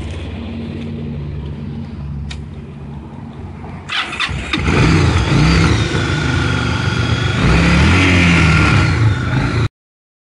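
A 2008 Yamaha V-Star 1100's air-cooled V-twin runs at a steady idle. About four seconds in, the throttle is blipped and the engine gets louder, revving up and down several times. The sound cuts off abruptly near the end.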